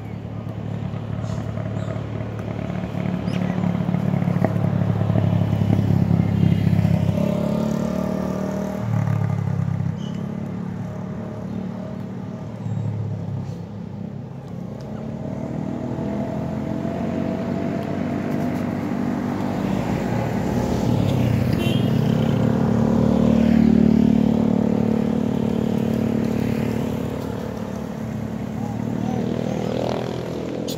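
Motor traffic on the road, cars and motorcycles, with engines that swell as they pass and fade away. The loudest passes come about six seconds in and again around twenty-four seconds.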